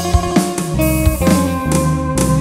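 Live band playing an instrumental passage: electric guitar melody over bass guitar, keyboard and drum kit, with a steady beat.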